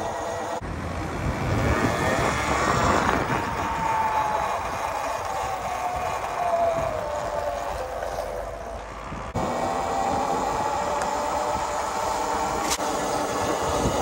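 Riding noise from a Talaria Sting R electric dirt bike on a sidewalk: wind on the microphone and tyre hum, with a whine that slowly falls in pitch mid-way.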